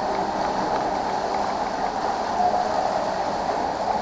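Steady rush of water from an indoor stream, a bubbling spring pool flowing under a wooden footbridge.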